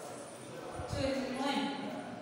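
A woman's voice speaking briefly about a second in, over a few low thumps.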